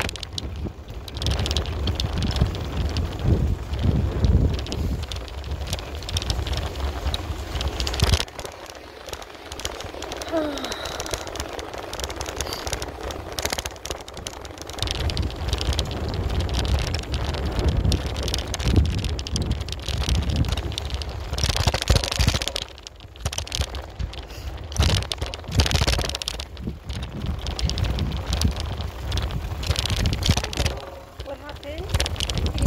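Wind buffeting a handheld phone's microphone while riding a bicycle: an uneven low rumble and hiss that swells and drops in gusts, easing off for several seconds in the middle, with a sharp knock about eight seconds in.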